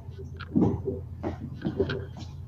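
A person's voice: a string of short, soft vocal sounds, much quieter than the talking around them.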